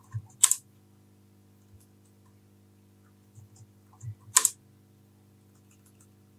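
Typing on a computer keyboard: scattered light keystrokes, with two much louder, sharp key strikes about half a second in and again a little past four seconds, over a faint steady hum.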